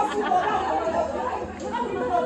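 Several people talking at once, overlapping chatter of mixed voices.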